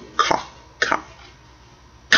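A man coughs twice, two short coughs within the first second.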